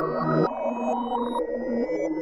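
Trap rap instrumental beat: sustained synthesizer notes over a repeating lower melodic figure, with no vocals. The lower figure drops out briefly about half a second in.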